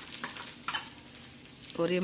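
Garlic and cumin sizzling in hot oil in a steel kadai while a steel ladle stirs, with a few sharp clinks of the ladle against the pan in the first second.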